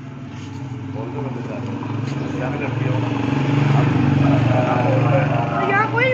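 A motor vehicle's engine running close by on the street, growing louder over the first few seconds as it approaches, then holding steady.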